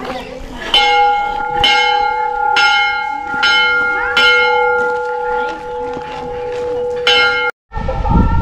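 A hanging metal temple bell struck repeatedly, about once a second for five strokes, its tone ringing on between them, then struck once more near the end before the sound cuts off suddenly.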